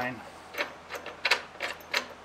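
About five light metallic clicks and clinks as a stainless bolt with its washers is turned out of a jack-plate bracket by hand.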